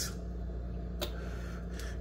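Room tone with a steady low hum, broken by one sharp click about a second in and a fainter one near the end.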